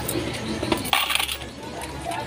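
A short burst of metallic clinking about a second in, small metal pieces knocking together at a street food cart, over a steady low background hum.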